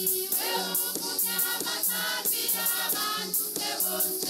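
Choir singing a hymn over a steady percussion beat, about three beats a second.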